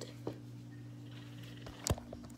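A steady low electrical hum, with a small click about a quarter second in and a sharp knock near the end, which is the phone being handled.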